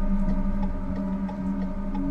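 A steady drone of several held tones, with faint ticks over it.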